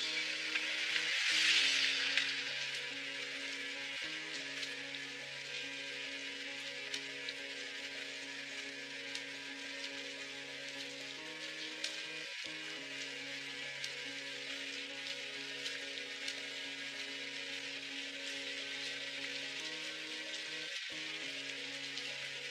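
Background score of slow, held chords that shift to new notes a few times, under a steady crackling hiss. A noise swell rises and fades in the first two seconds.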